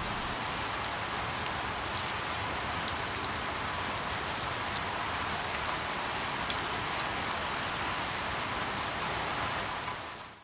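Steady rain falling on leaves, with scattered sharp drop taps standing out from the even patter.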